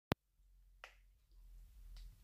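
A sharp, loud click right at the start, then a fainter click a little under a second later, over a faint low hum.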